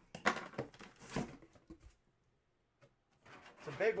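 Cardboard box being opened by hand: the lid flaps lifted and an inner cardboard box pulled out, a scraping rustle with a few knocks lasting about two seconds.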